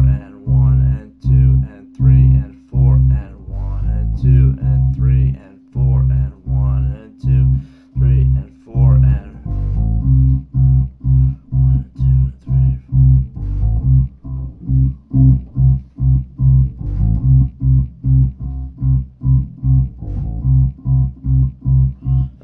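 Multi-string electric bass playing a repeated eighth-note riff on the low strings: third to fifth fret on the low E string (G to A), then third fret on the A string (C), at a slowed tempo. The notes come closer together from about halfway.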